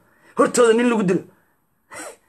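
A man talking to camera: one short spoken phrase, then a pause and a brief breath near the end.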